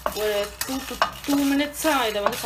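A wooden spatula stirring whole spices being dry-roasted in a non-stick frying pan: dried red chillies, coriander seeds and cumin. It makes a steady scraping hiss with the seeds rattling across the pan.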